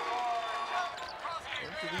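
Gymnasium game sound at a college basketball game: crowd noise after a made three-pointer, with held tones in the first half and a few short high squeaks on the court later on.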